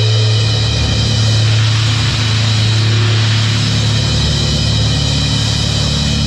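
Live metalcore band starting a song: a loud low note drones steadily, and about half a second in dense distorted guitar and drums come in over it.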